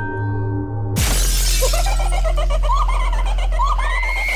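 Horror podcast intro music and sound effects: soft chiming tones, then about a second in a sudden loud crash that gives way to a deep steady drone under short, wavering high sounds.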